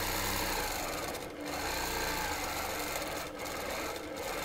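Stand-up longarm quilting machine stitching steadily as it free-motion quilts feather fronds, the sound briefly dipping twice.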